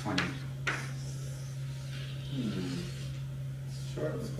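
Chalk on a blackboard: a couple of sharp taps in the first second, then a longer scrape of chalk drawing lines, over a steady low room hum.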